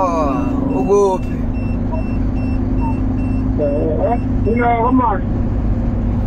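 Heavy truck's diesel engine running steadily at highway speed, heard inside the cab with road rumble. A faint, quick run of high beeps sounds through the middle.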